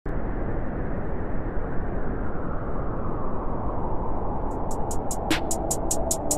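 Opening of a hip-hop beat: a steady rushing noise layer starts suddenly, then rapid trap-style hi-hats come in about four and a half seconds in, ticking about five times a second, with a few held synth notes near the end.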